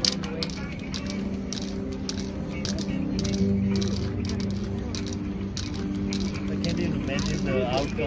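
Aerosol spray-paint can hissing in many short bursts as colour is sprayed onto a stencilled painting, over sustained background music and voices.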